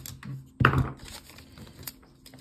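Small aluminium Raspberry Pi case set down on a desk: a knock about half a second in, then light clicks and taps from handling it.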